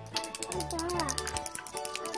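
Rapid, even ratchet-like clicking, about fifteen clicks a second, lasting just over a second and then stopping, over steady background music.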